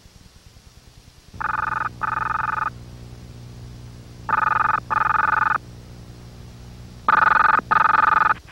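A telephone ringing in a double-ring pattern: three double rings about three seconds apart, starting about a second and a half in.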